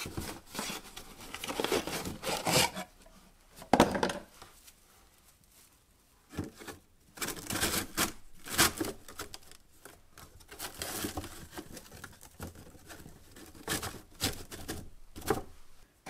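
A cardboard box and a stack of sanding discs being handled: irregular rustling, scraping and light knocks as the discs are pulled from the box and pressed into a plastic holder. The sharpest knock comes about four seconds in, and a quieter stretch follows for a couple of seconds.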